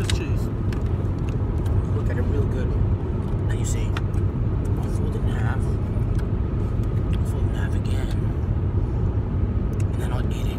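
Steady low rumble of a car heard from inside the cabin, with a few short sharp sounds over it.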